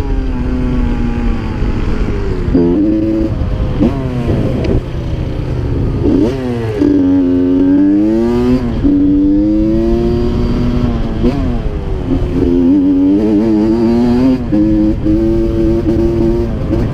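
Honda CR85 two-stroke dirt bike engine revving up and falling back again and again, heard up close from the bike with a low wind rumble.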